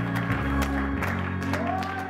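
Church praise music: sustained low chords with repeated drum hits, and clapping from the congregation.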